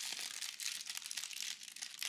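A small paper takeout bag crinkling and rustling continuously as hands unfold and open it.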